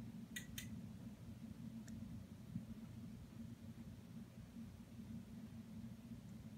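Quiet steady low room hum, with two faint clicks a little under a second in and another faint click about two seconds in.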